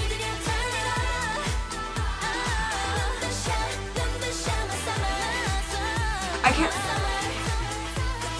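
K-pop girl-group song playing: female singing over a steady kick-drum beat, with a brief loud accent about six and a half seconds in.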